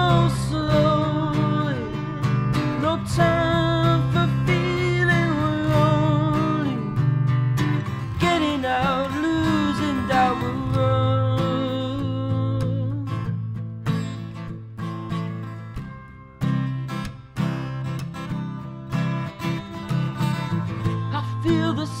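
Acoustic guitar strummed in steady chords, with a young man singing over it for roughly the first half; from about 13 seconds in, the guitar carries on alone in regular strums until the voice comes back right at the end.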